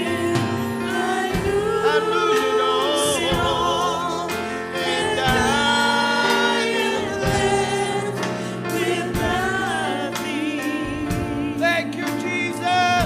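A worship team and congregation singing a gospel song together, with several wavering voices over keyboard chords and a steady drum beat.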